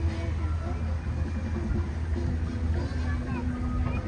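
Tour boat's motor running with a steady low hum as the boat moves along, with faint voices in the background.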